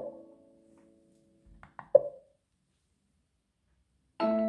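Xiaomi Mi Smart Clock's small built-in speaker playing its default alarm tone: the last note of the melody rings and fades out over about a second, then a gap of silence in the tone. About two seconds in come a few light clicks and one sharper click with a brief note as the volume is stepped up.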